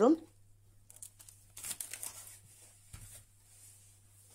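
Gloved hands handling slices of kaşar cheese over vegetables in a glass baking dish: faint rustling and tearing, then a light knock about three seconds in.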